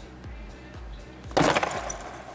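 A plastic bottle of supercooled water knocked against a clear table top in a short, loud burst about one and a half seconds in: the shock that sets the water freezing. Background music with a low bass runs underneath.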